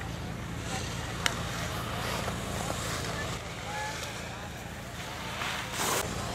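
Low, steady rumble of wind on the camera microphone, with one sharp click about a second in.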